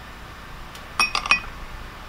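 Small glass prep bowls clinking against each other: three or four quick, ringing glass clinks about a second in.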